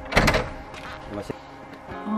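Wooden plank door creaking and scraping as it is pushed open, a short loud burst just after the start, with a light knock about a second later.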